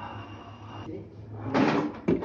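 A steady low hum, with a brief, loud scraping clatter near the end, like something being handled or knocked on a kitchen counter.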